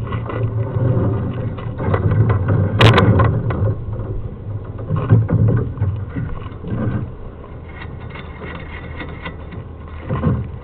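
Sewer inspection camera and its push cable being fed into a drain line: irregular knocks and scrapes over a steady low hum, busier and louder in the first seven seconds, then quieter.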